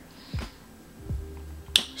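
A pause with a couple of soft low knocks, then one sharp click near the end, a tongue or mouth click just before talking resumes.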